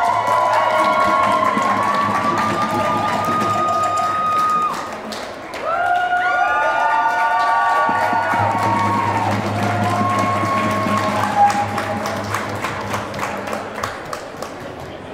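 A crowd of protesters singing together in long held notes, two drawn-out phrases with a brief lull between them, over hand-clapping that grows more prominent near the end.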